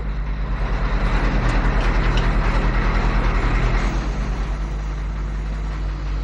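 Bus engine sound effect played over the studio speakers: the engine running with a fast, even throb, swelling within the first second and easing off after about four seconds.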